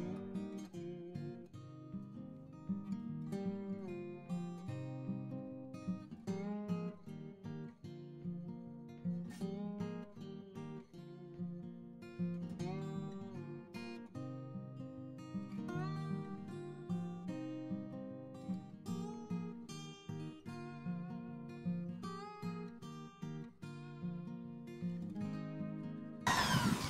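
Background music: acoustic guitar, plucked and strummed, playing a steady run of notes.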